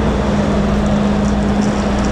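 Coach engine idling: a steady low rumble with a constant hum.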